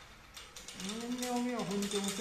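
Rapid wooden clattering of a small hand-carried deity sedan chair shaken between two bearers' hands, its loose parts knocking together. About a second in, a steady pitched tone joins and wavers slightly in pitch.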